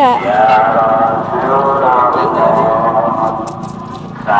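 Voices talking, with a few light clicks near the end.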